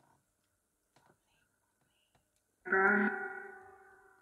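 Near silence with a few faint clicks. About two and a half seconds in, a single steady musical tone starts suddenly and fades away slowly.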